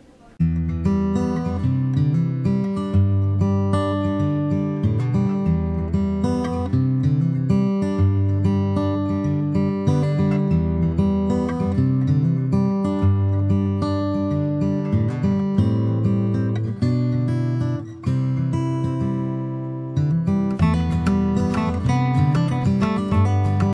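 Acoustic guitar music, a continuous run of plucked and strummed notes starting about half a second in, with a short drop-out a few seconds before the end.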